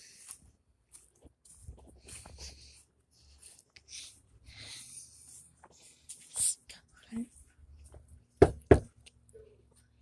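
Knuckles knocking twice in quick succession on an exterior door near the end, after faint footsteps and handling noise.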